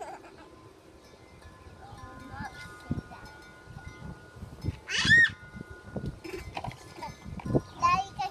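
Plastic toys knocking and clattering as they are handled, with a short high-pitched squeal about five seconds in, the loudest sound.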